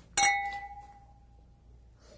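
Two stemmed wine glasses, partly filled with red wine, clinked together in a toast: a single sharp clink that rings on with one clear tone, fading over about a second and a half.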